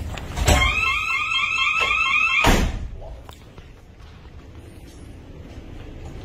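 Exit-door alarm sounding for about two seconds, a warbling tone that rises over and over, about three times a second, framed by a thump as it starts and a sharp knock as it cuts off.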